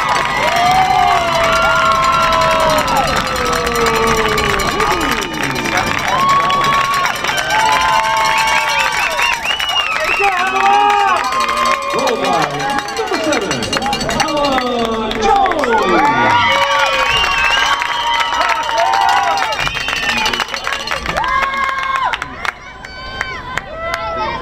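Crowd cheering and shouting at a goal, many high-pitched voices overlapping in long calls that glide downward; it dies down about twenty-two seconds in.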